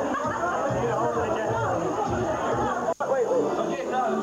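Several people chattering over background music. The sound drops out for an instant about three seconds in.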